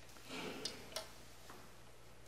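A quiet pause with a faint breath about half a second in, then two small clicks a third of a second apart and a fainter third click, over a low steady hum.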